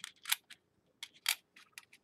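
Pennies clicking against each other as they are gathered up by hand: a handful of short, sharp clicks, the two loudest about a second apart.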